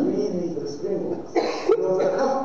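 A man speaking into a microphone, with a short cough about one and a half seconds in.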